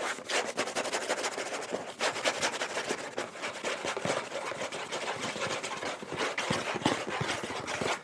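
A cardboard cracker box being handled by fingers close to a sensitive microphone, making a dense, unbroken crackling and scratching. It starts suddenly and stops suddenly after about eight seconds.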